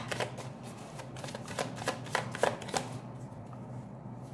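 A tarot deck being shuffled by hand: a quick, irregular run of card flicks and slaps that thins out near the end.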